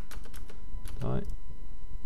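Computer keyboard keys tapped in a quick run of about five strokes in the first half second, typing a number into a software value field.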